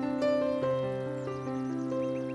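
Soft piano music playing a slow melody, with a bird chirping a quick series of short high notes over it about a second in.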